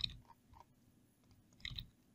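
A few faint, short clicks and smacks close to the microphone: one at the start, two very small ones about half a second in, and one near the end.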